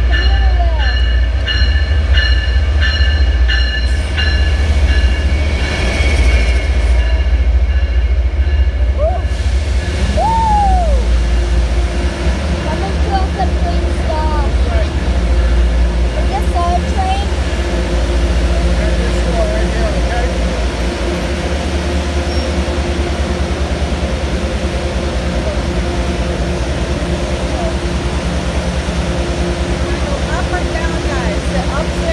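MBTA commuter rail train pulling into the platform and standing, with a loud, steady low rumble throughout. For the first eight seconds or so a ringing repeats about twice a second. After that the sound settles into a steady hum.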